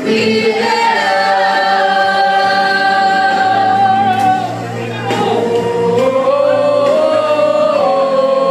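A women's choir singing a gospel song in long, drawn-out held notes. The sound dips briefly about halfway through, then the voices rise onto a new held note.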